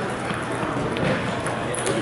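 Busy sports-hall hubbub of background voices, with a few sharp clicks of table tennis balls, one about halfway through and another near the end.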